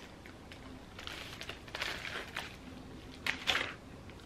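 Soft rustling and crinkling of craft materials being handled by hand, with a few louder rustles about two seconds in and again near the end.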